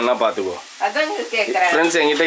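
Food sizzling in a frying pan as it is stirred with a spoon, under a woman's voice talking.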